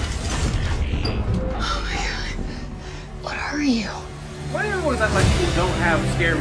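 Movie trailer soundtrack: mechanical clicking and whirring of a robot's moving parts over a low music score, with short rising-and-falling voice-like sounds a few seconds in.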